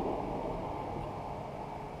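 Steady low room hum, an even noise with no strokes or tones, easing slightly in level over the two seconds.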